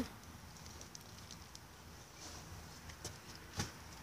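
Quiet outdoor background with a few faint ticks and one short, sharp knock near the end.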